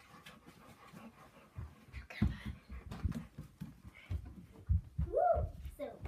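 Irregular thumps and rustling from a handheld camera being carried quickly. Near the end comes one short call that rises and falls in pitch.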